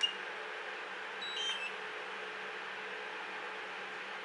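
A sharp click with a short high beep right at the start, then a brief run of stepped high electronic beeps about a second and a half in, from the DJI Mavic Air remote controller's buzzer, which has been dampened to sound quieter.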